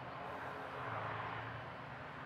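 Steady outdoor background noise: an even hiss with a low hum underneath, swelling slightly about a second in, with no distinct event.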